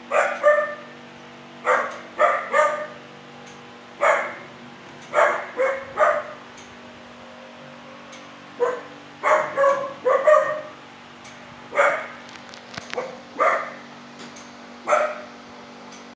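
A dog barking in a shelter kennel: short barks, singly and in quick runs of two or three, with pauses of a second or two between runs. A steady low hum runs underneath.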